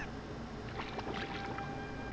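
Anime episode soundtrack playing faintly in the background: a quiet wash of water-like noise with a few soft clicks around the middle.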